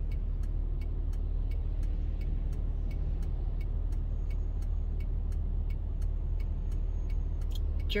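Steady low rumble of a moving car heard from inside the cabin, with faint regular ticks a little over two a second.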